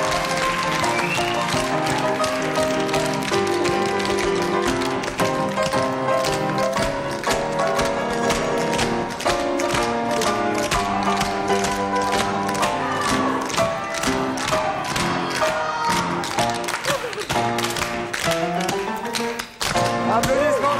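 Tap shoes striking a hard stage floor in fast, dense rhythms, several dancers at once, over upbeat musical accompaniment. The taps grow thicker about a third of the way in.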